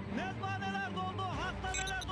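A voice over background music with steady low tones.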